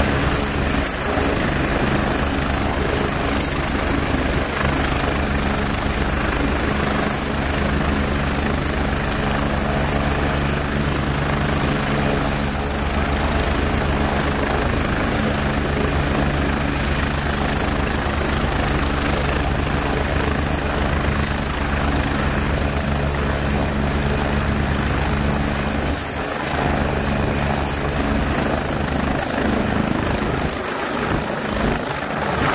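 Agusta 109 twin-turbine helicopter running on the ground: a steady turbine whine and high whistle over a low rotor thrum. The whistle rises slightly near the end as the main rotor speeds up.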